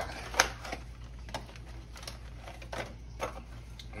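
Light, irregular clicks and taps, about half a dozen, from crackers being handled and set out beside a fruit platter.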